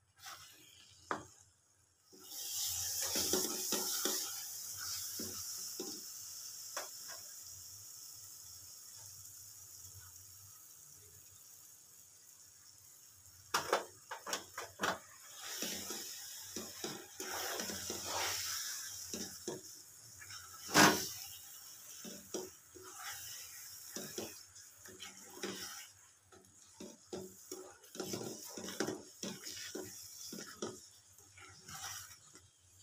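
Food hitting hot oil in a pan sizzles, starting suddenly about two seconds in and dying away over about ten seconds. Then a utensil clinks and scrapes against the pan again and again, with one loud clank past the middle.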